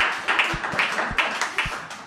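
Small audience applauding, the clapping fading away near the end.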